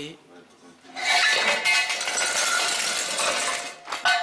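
Loose metal debris rattling and scraping, with a ringing clink through it, for nearly three seconds starting about a second in.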